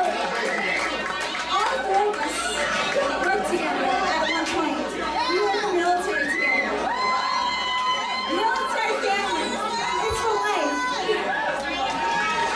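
A crowd of many voices talking and calling out over one another, loud and continuous.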